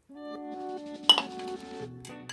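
A metal ladle clinks once against the soup pot about a second in, with a brief ringing tail, as soup is ladled out, over background music.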